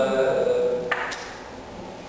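A man speaking in a large, echoing hall, then a sharp click with a brief ring about a second in as his voice stops.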